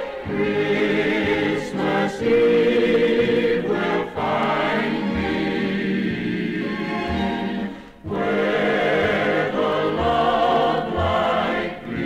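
Choir singing with an orchestra, played from a 1955 Mercury 78 rpm shellac record. The phrases are sung with short breaths between them, the longest break about 8 seconds in.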